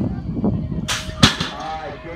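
BMX start gate dropping: a short burst of hiss about a second in, then one loud, sharp slam as the gate hits the ramp.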